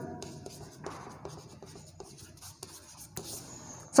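Chalk writing on a chalkboard: faint scratching with light taps of the chalk as letters are drawn, and one sharper stroke about three seconds in.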